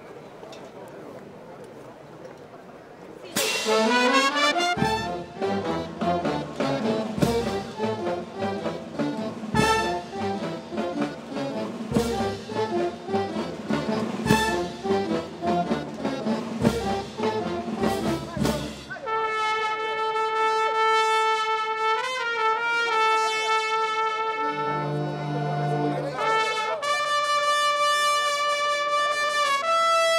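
Brass band playing: low murmur until about three seconds in, then a lively brass passage with a heavy drum stroke about every two and a half seconds. From about nineteen seconds the band moves to long held chords.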